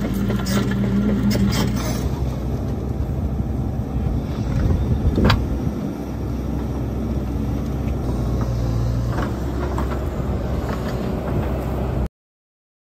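Excavator diesel engine running steadily as the machine works its tiltrotator, with a few clicks in the first second or two and one sharper knock about five seconds in.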